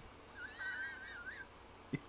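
A person's high-pitched, squeaky laugh: one wavering squeal lasting about a second.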